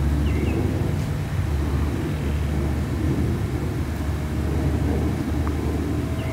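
Outdoor field ambience dominated by a steady low rumble, with a brief bird chirp about half a second in.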